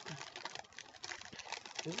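Plastic protein-bar wrapper being torn open and crinkled: a run of small, irregular crackles and clicks.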